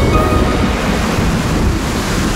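Sound-effect storm wind: a loud, steady rushing whoosh over background music.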